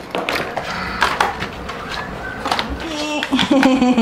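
Cardboard toy box and its packing being handled and pulled apart: scattered scrapes, clicks and knocks, with a voice coming in near the end.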